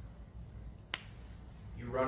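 A single sharp click, like a snap or tap, a little under a second in during a pause in the talk, with a man's voice starting again near the end.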